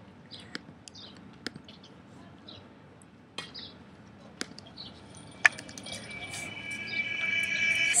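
Quiet background with scattered small clicks and faint voices, then a sharp click about five and a half seconds in, after which an instrumental backing track of held chords fades in and swells toward the end.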